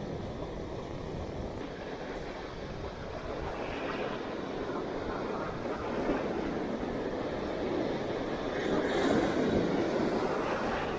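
Ocean surf breaking and washing in through the shallows, a steady rushing noise that swells about four seconds in and again near the end.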